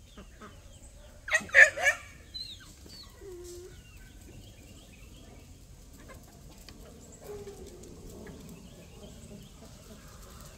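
A flock of free-range chickens clucking, with a loud burst of three calls about a second and a half in and scattered softer calls after.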